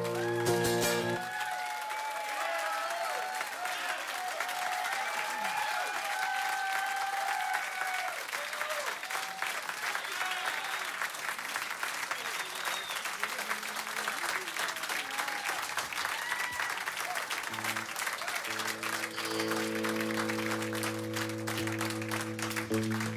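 The final acoustic guitar chord of a song rings out and stops about a second in, followed by a club audience applauding and cheering. Near the end a guitar starts playing held notes again.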